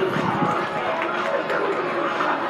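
People's voices over music playing in the background, a steady busy mix with no pause.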